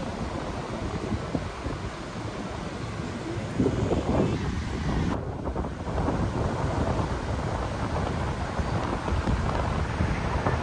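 Wind buffeting the microphone over the steady wash of ocean surf, the gusts growing stronger about three and a half seconds in.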